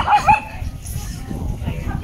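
Small dogs barking and yipping in rough play, loudest in the first half-second, then quieter.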